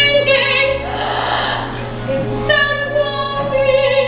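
Female voices singing a stage-musical song, with long held notes and vibrato. A second long note starts about halfway through and is held almost to the end.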